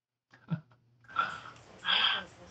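Audio from a newly connected video-chat partner: a couple of clicks, then two short, harsh vocal-like bursts, the second the louder, over a steady low electrical hum.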